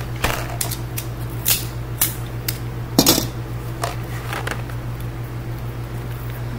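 Small cardboard candy boxes handled and knocked against each other: a run of light taps and rustles, the loudest about three seconds in, over a steady low hum.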